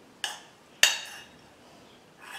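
A metal spoon clinks twice against a small enamel bowl as grated cheese is scraped out of it, the second clink the louder, each with a short ring.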